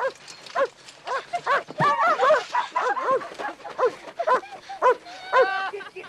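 A dog barking over and over, about two barks a second, with a denser flurry of higher barks a couple of seconds in and again near the end.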